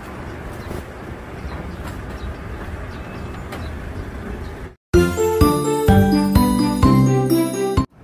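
Steady outdoor street noise, then, after a sudden cut to silence a little past halfway, a loud, bright chiming jingle melody of bell-like notes that runs for about three seconds and stops abruptly.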